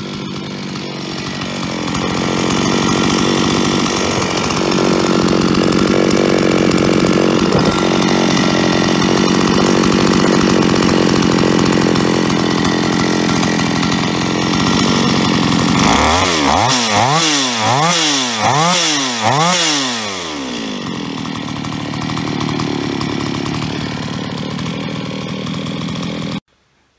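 Solo 644 two-stroke chainsaw engine with its top cover off, idling steadily, then revved up and down about five times in quick succession before settling back to idle. It runs on a freshly fitted piston: the hard metallic piston-slap rattle from the worn piston is gone, leaving only a very slight trace.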